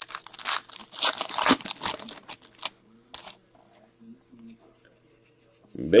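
Trading-card packs and cards being handled: a dense crinkling, crackling rustle of wrapper and card stock for about the first two and a half seconds, a short crinkle a little after three seconds, then only a few faint handling sounds.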